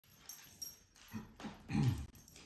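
A large dog gives a short, low vocal sound near the end that bends in pitch, after a few soft clicks.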